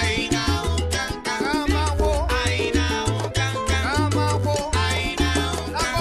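Recorded salsa music: a band track with a stepping bass line, busy percussion and sliding melody lines above.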